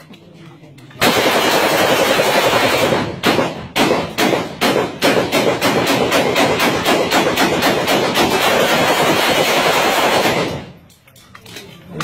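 Rapid rifle gunfire, shots running together into a continuous rattle that starts about a second in and stops shortly before the end. Between about three and five seconds in, the shots come apart into a quick run of separate cracks.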